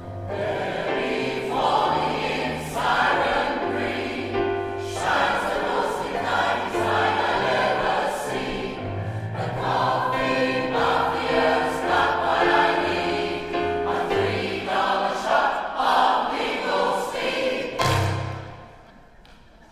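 A choir singing a polka with instrumental accompaniment and a moving bass line.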